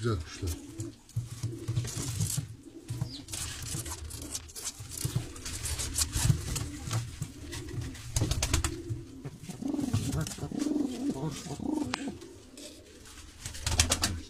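Turkish tumbler pigeons cooing over and over in a small loft pen, with a run of sharp clicks and scuffs around the middle.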